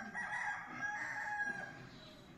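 A rooster crowing: one long call that trails off near the end.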